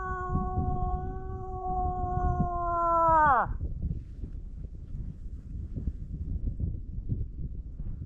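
A hunter's imitation cow moose call: one long call held at a steady pitch that falls off sharply and ends about three and a half seconds in. Low rumbling noise follows.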